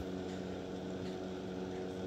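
Steady low background hum with a few faint, even tones underneath and no change through the pause.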